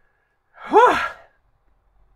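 A man's single voiced, breathy sigh, rising then falling in pitch and lasting under a second, as he is overcome with emotion and close to tears.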